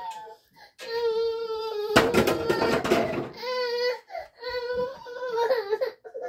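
A toddler whining and crying in long, high-pitched wails, with a rough noisy burst lasting about a second, about two seconds in.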